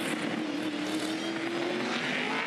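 A Supercars race car's 5.0-litre V8 running at speed, one steady engine note rising slowly in pitch over a background of engine and track noise.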